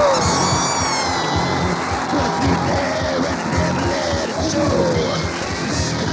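Noise-punk band playing a loud, dense instrumental passage of a country-song cover: distorted noise with wavering, sliding pitched tones over a fast low pulse.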